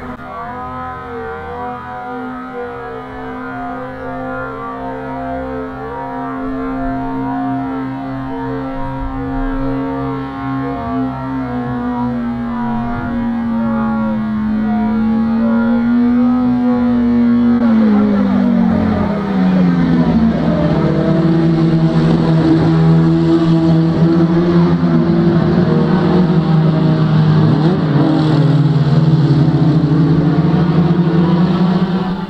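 Racing car engines at high revs. The note holds steady, then drops in pitch about eighteen seconds in as the cars back off, and holds there. Heard through a radio broadcast feed.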